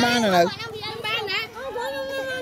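Children's voices talking and calling out, loudest in the first half second.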